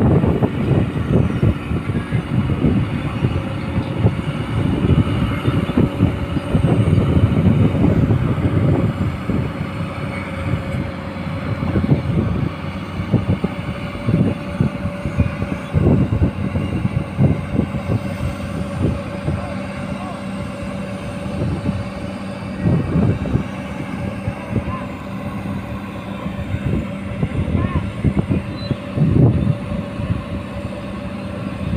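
Hydraulic excavator's diesel engine running under load with a steady whine as it lifts concrete sheet piles on a sling. It is louder for the first eight or nine seconds, then settles lower.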